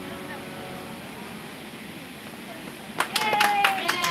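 The last chord of an upright piano dying away, then, about three seconds in, a few people start clapping, with a brief exclamation from a voice.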